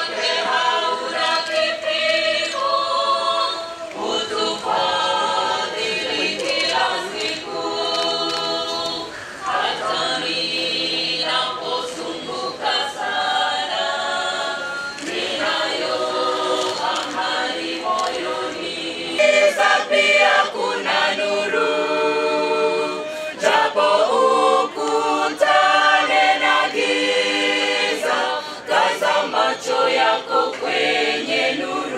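A mixed choir of men and women singing together without instruments, in phrases of a few seconds each.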